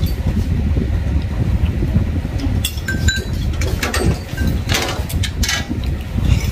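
A person eating noodles with chopsticks from a bowl: a few light clicks of chopsticks against the bowl, then noodles slurped in several short pulls near the end, over a steady low rumble.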